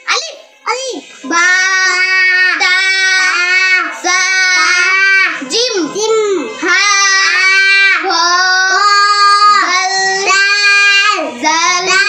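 A young boy reciting Arabic in a high, melodic chant, each phrase drawn out in long steady notes with short breaks for breath.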